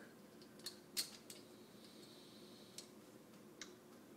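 A few faint, sharp metallic clicks, the loudest about a second in, from an Allen wrench turning a stiff steel set screw into a threaded hole in the lathe bed, the screw binding on paint and filler left in the threads.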